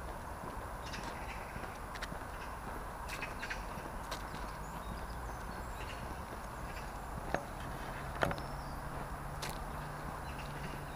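Footsteps on a tarmac woodland path, irregular light taps and scuffs about once a second, with one sharper knock about eight seconds in. Underneath is the steady rumble of distant road traffic, a low hum that grows stronger in the second half.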